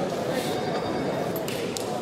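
Indistinct murmur of many voices in a large hall, with a couple of faint sharp clicks near the end.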